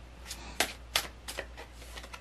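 A deck of tarot cards being shuffled by hand: a handful of short, crisp card snaps spaced irregularly, a few tenths of a second apart.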